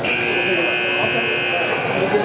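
An arena's electric buzzer sounding one steady note for nearly two seconds and then cutting off, over the chatter of voices in the hall.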